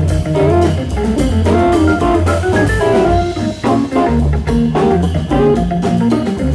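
Live jazz-funk organ trio playing: Hammond organ, electric guitar and drum kit. The organ also carries a moving bass line under the melody, over a busy drum beat.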